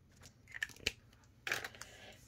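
Faint scratching of a felt-tip marker colouring on paper, with a sharp click a little under a second in, then a brief rustle near the end as the marker is put down.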